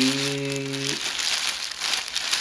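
Thin clear plastic packaging bag crinkling as hands handle the rubber sandals sealed inside it. The crinkling is heard on its own in the second half.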